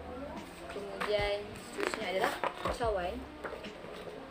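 A person's voice in three short phrases, about one, two and three seconds in.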